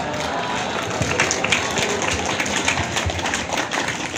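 Audience applause mixed with crowd noise.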